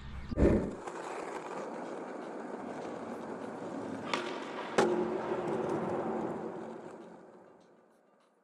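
Skateboard wheels rolling steadily over concrete, with two sharp clacks under a second apart midway, then the sound fades out. A brief thump comes at the very start.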